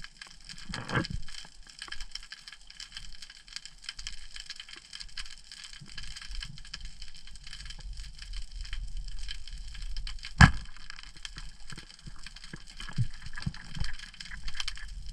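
Underwater sound: a constant fine crackling, then one sharp, loud crack about ten and a half seconds in as a short band speargun fires, followed by a few faint knocks.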